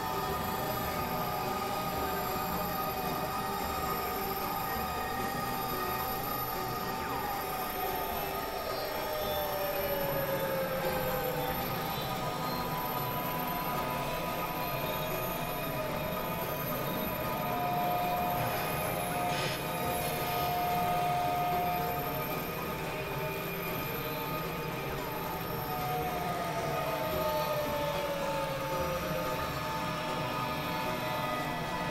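Experimental electronic drone music with several tracks overlaid: a dense bed of held tones over a noisy hiss. A high tone slides slowly downward about a quarter of the way in and again near the end, much like a train's wheel squeal, and a brief steady tone sounds in the middle.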